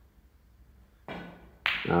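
Snooker balls colliding: about a second in, the cue ball strikes the red with a single sharp click that rings briefly, on a long straight shot that pots the red.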